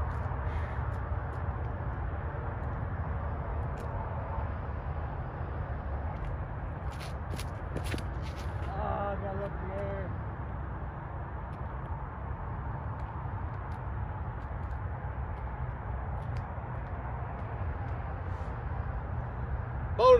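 Steady low outdoor rumble of open-air background noise as a disc golfer runs up and drives a disc off a concrete tee pad. A few sharp clicks come a little before the throw, and a brief voice-like sound follows around the release.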